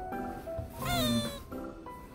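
A single cat meow about a second in, rising and then falling in pitch, over light background music.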